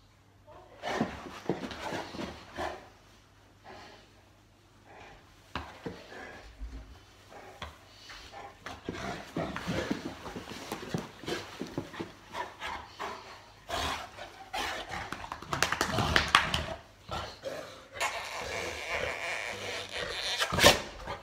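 A Boerboel mastiff rough-housing with a person: irregular bursts of breathing and scuffling. There is a quiet stretch a few seconds in, and the second half is busier and louder.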